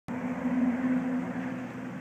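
A steady mechanical hum with a low steady tone, easing off slightly near the end.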